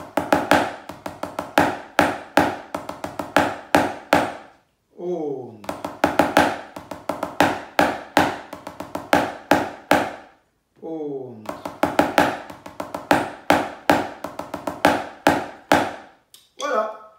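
Wooden drumsticks on a rubber practice pad playing slow Basel-drumming rudiments: five-stroke rolls (Fünferli), with end strokes (Endstreich). The strokes come in quick, regular groups, broken twice, about five and eleven seconds in, by a brief falling vocal sound.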